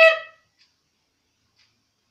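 The end of a girl's shouted cry of alarm, her voice high and rising, breaking off within half a second. Then near silence with a few faint clicks.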